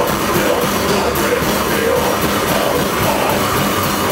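Hardcore band playing live and loud: electric guitar and drums in a steady, dense rhythm.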